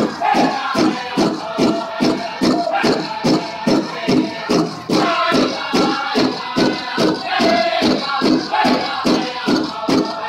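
A powwow drum group beating a large drum in a steady, even beat while the singers sing a contest song, heard through loudspeakers.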